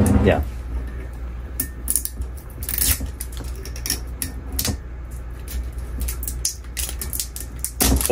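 Plastic seal being picked and peeled off the neck of a bourbon bottle: irregular crinkling and small sharp clicks, in uneven clusters.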